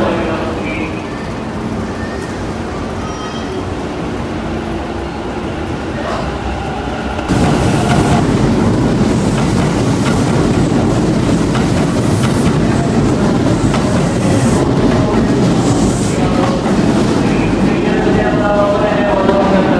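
Kintetsu limited express electric train in an underground station, running along the platform with a steady rumble of wheels on rail that echoes in the enclosed station. The sound jumps abruptly louder about seven seconds in, where the footage cuts to the train moving past close by.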